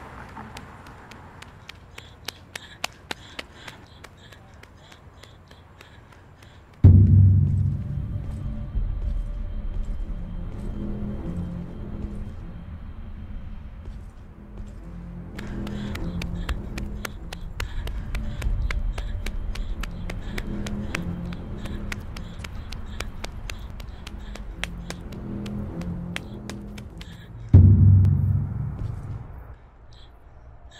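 Suspense film score. Sparse clicking ticks come first. A deep boom about seven seconds in starts a low, pulsing bass line with ticking on top, and a second deep boom near the end fades out.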